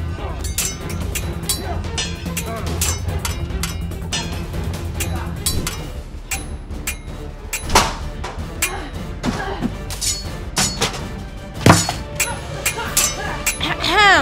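Repeated sword clashes, sharp metallic clangs with short ringing tails, over background music. The loudest clang comes near the end.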